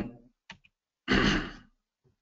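A man's short voiced sigh about a second in, lasting about half a second, after the tail of a spoken 'um'.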